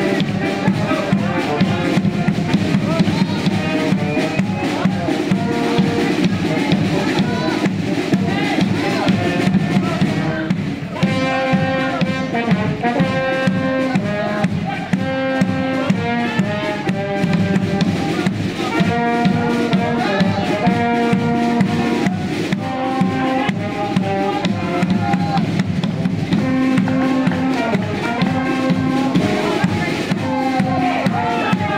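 Brass band music with drums and bass drum playing a lively, rhythmic tune; from about a third of the way in, a clear melody of held notes stands out.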